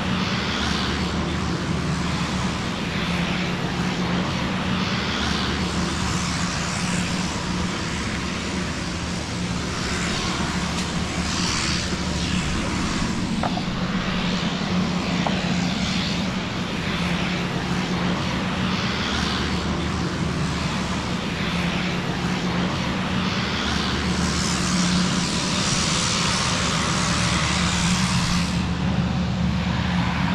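Small turboprop airplane engines running steadily on the ground, a constant hum with hiss on top, growing somewhat louder near the end.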